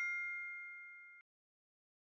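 Ringing tail of a two-note chime sound effect, its clear bell-like tones fading and then cutting off suddenly about a second in.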